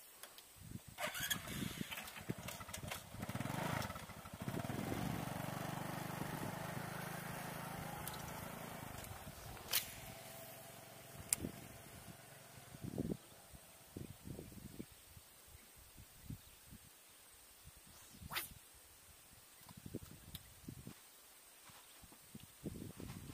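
An engine running steadily, starting about four seconds in and fading away slowly over several seconds, with a few sharp clicks around it.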